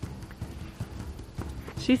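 Horses walking on grass: soft, irregular hoof thuds. A woman's voice starts to speak near the end.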